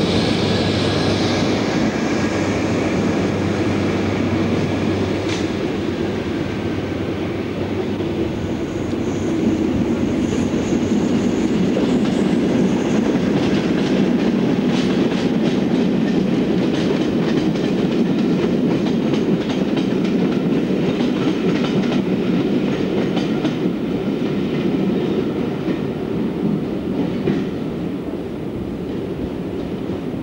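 Passenger train coaches rolling past close by: a steady rumble, with a low hum at first while an InterCity 125 set passes. Then a long run of clickety-clack as the wheels cross rail joints, with a thin high wheel squeal around ten seconds in.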